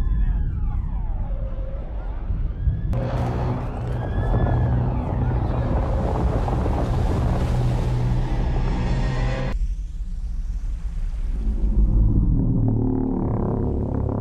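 Film sound mix: a siren wailing up and down twice over a deep rumble, then a loud rushing noise from about three seconds in that cuts off suddenly near ten seconds, followed by rumbling score music.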